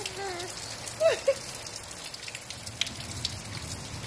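Steady rain falling in a storm, with many individual drops ticking on hard surfaces.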